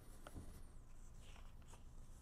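Near silence: faint room tone with a few soft rustles and taps of sheets of paper being handled.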